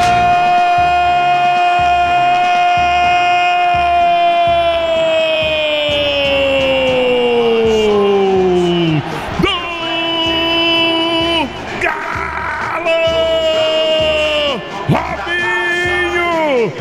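Brazilian radio narrator's drawn-out goal shout, one note held steady for about eight seconds before its pitch sinks away, followed by shorter held shouts that drop off at their ends. Crowd cheering lies underneath.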